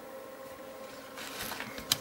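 Quiet handling noise as the metal chassis of a valve amplifier is moved around, over a steady faint hum, with one sharp click near the end.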